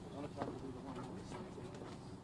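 Faint, indistinct voices of people milling about, with a few short sharp clicks.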